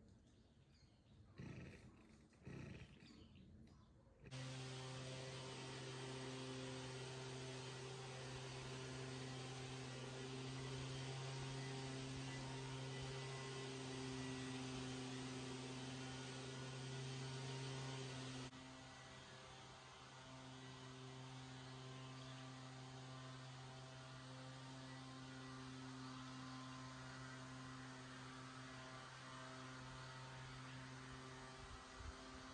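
A steady, low mechanical hum with a fixed pitch, starting suddenly about four seconds in and dropping a little in level about eighteen seconds in. Before it, a few soft knocks.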